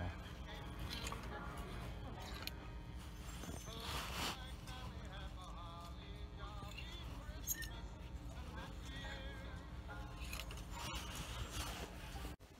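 Thrift-store background of faint voices and music over a low hum, with a few short clicks and scrapes of clothes hangers pushed along a metal rack.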